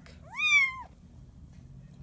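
A single high-pitched meow from a five-week-old Bengal kitten, about half a second long, its pitch rising and then falling.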